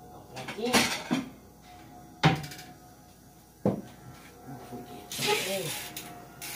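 Kitchen wall cupboard being opened and shut, with dishes clinking: four sharp knocks in the first four seconds, the loudest just after two seconds in.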